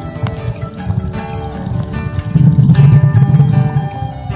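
Background music with a steady beat and held melody notes, swelling louder with heavier bass a little past halfway.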